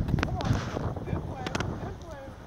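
Wind buffeting the microphone: a loud, low rumble that eases off near the end, with a couple of short clicks.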